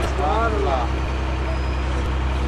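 A steady low hum with several even low tones runs throughout, and a faint voice is heard briefly in the first second.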